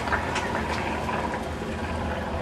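Steady low outdoor background rumble, with a few faint short ticks in the first second.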